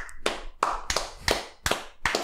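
Two people clapping their hands: a short, slow round of about six claps, roughly three a second.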